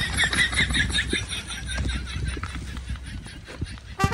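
A horse whinnying: a high, quavering call that fades away over about three seconds.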